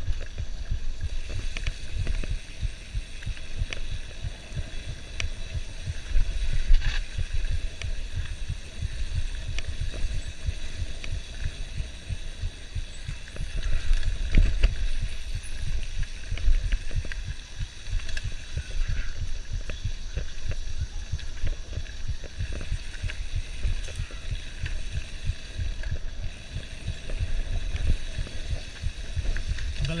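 Wind buffeting the camera microphone over the low, uneven knocking and rattling of a mountain bike jolting down a rough dirt trail at speed.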